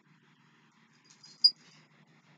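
A small dog giving one brief, high squeak about one and a half seconds in, over faint room hum.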